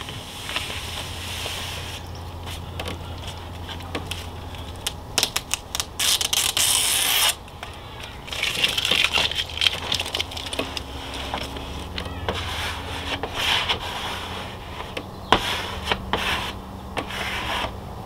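Hands and a plastic squeegee rubbing and scraping over a wet vinyl decal and its transfer tape on a trailer's side, with irregular crackling and clicks as the tape is pressed down and soapy water is pushed out from under it. A brief louder hiss comes about six seconds in.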